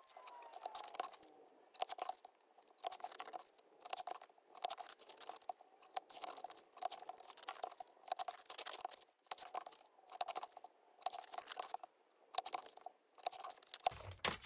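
Sped-up sound of paper being handled and cut on a sliding-blade paper trimmer: a quick run of short rustling and scraping bursts, about two a second.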